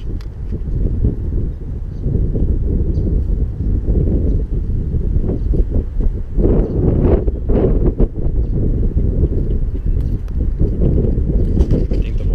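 Wind buffeting the camera's microphone: a loud, steady low rumble, with a few short rustles and knocks around the middle.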